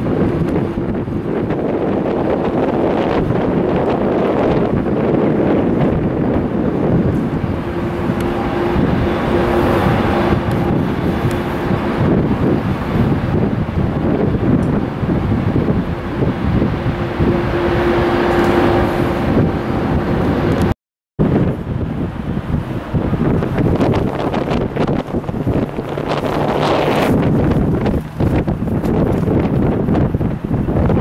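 Jet engines of taxiing airliners, a steady noise with a faint hum that comes and goes, mixed with wind on the microphone. The sound cuts out for a moment about two-thirds of the way through.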